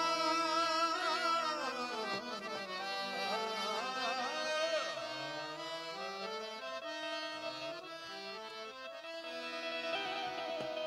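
Harmonium playing a melodic interlude of held reed notes that step up and down, in a Gujarati folk style, loudest at the start and easing off toward the end.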